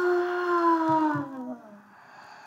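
A person's voice giving one long drawn-out wail that slowly sinks in pitch and fades out near the end, acted as a character's weeping cry.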